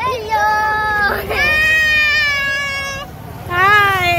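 High-pitched voices calling out in long, drawn-out cries, like playful shouts. The longest is held for about a second and a half. After a short pause near the end, another starts.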